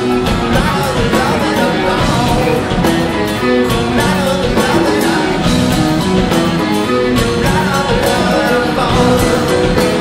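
Live rock band playing: a Ludwig acrylic drum kit with cymbals keeps a busy, steady beat under bass and electric guitar.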